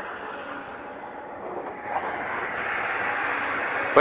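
Steady drone of a distant engine, getting a little louder about halfway through.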